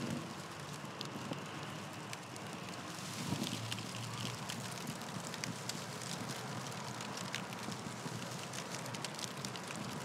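Steady crackling hiss: an even noise dotted with many small irregular crackles.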